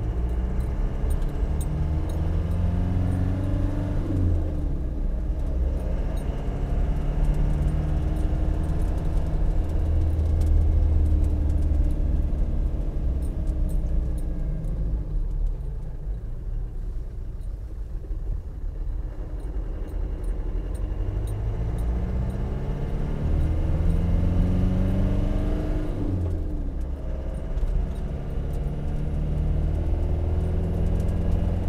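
Land Rover Defender 90's performance-tuned 2.5-litre turbo diesel with a three-inch straight-through stainless exhaust, pulling away and accelerating through the gears. The engine note climbs and drops at a shift in the first few seconds, eases off in the middle, then climbs again and drops at another shift near the end.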